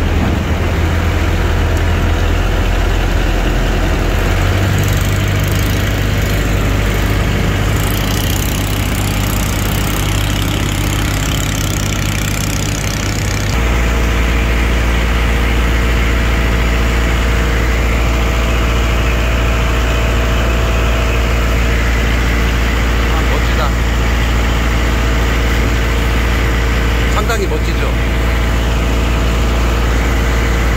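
Engine of a wooden passenger boat running steadily under way across the lake. About halfway through its note changes abruptly and settles into a deeper, steady drone.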